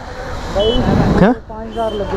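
Street traffic: a motor vehicle passing close by, its engine noise swelling to a peak about a second in and easing off, with two short, high beeps over it.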